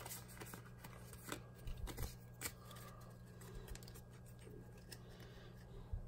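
Pokémon trading cards being handled in the hands: faint, scattered clicks and rustles of card stock sliding against card stock.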